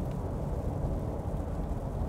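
Steady low drone of road and engine noise inside the cabin of a Ford Ranger Bi-Turbo pickup cruising at highway speed.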